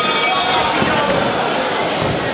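Boxing ring bell struck at the start of the round, its ringing fading over about a second, over steady crowd chatter and shouting.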